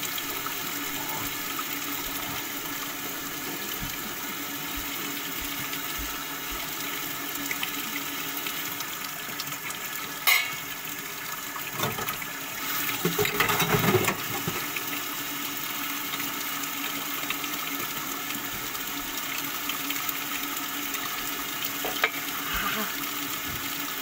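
Water running steadily, with a louder stretch of splashing between about 12 and 14 seconds in and a sharp click about 10 seconds in.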